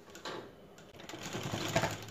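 A black domestic straight-stitch sewing machine stitching a folded hem on a cotton lungi edge, its needle and feed making a fast, fine clicking. It is faint at first and gets louder through the second half.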